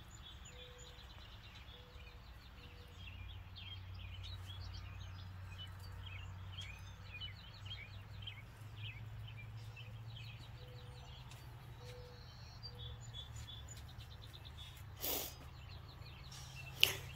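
Birds chirping and singing repeatedly, with a few short lower notes in between, over a faint steady low hum of outdoor ambience. A brief burst of noise comes about fifteen seconds in.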